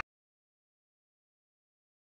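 Complete silence: the soundtrack cuts off abruptly at the very start and nothing follows.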